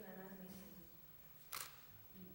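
Low voices fade out in the first second, then one short, sharp camera shutter click about a second and a half in.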